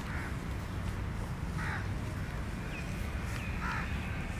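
A crow cawing three times, the caws spaced a little under two seconds apart, with a small bird chirping briefly in between. A steady low rumble runs underneath.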